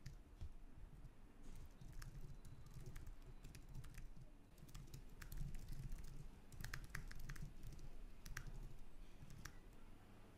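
Computer keyboard being typed on: faint, irregular key clicks in quick runs with short pauses.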